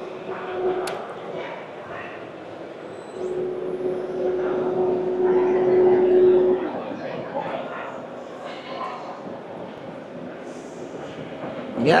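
CNC wheel diamond-cutting lathe running, taking a light 0.1 mm pass on an alloy wheel: a steady mid-pitched tone heard briefly at first, then again for about three seconds before it stops, over the murmur of a busy exhibition hall.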